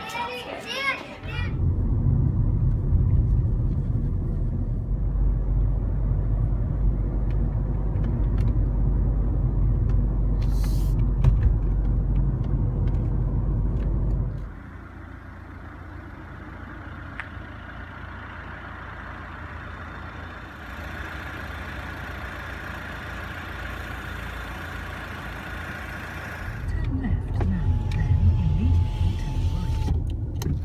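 Steady low rumble of a car driving, heard from inside the cabin, louder for the first half and again near the end.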